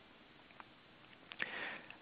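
Near silence, then a man's short, faint in-breath about a second and a half in.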